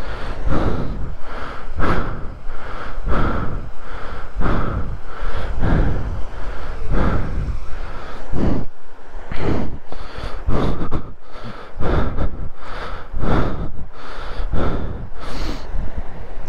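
A person panting close to the microphone, quick heavy breaths in and out at a steady pace of about one to two a second, from the exertion of scrambling over rock.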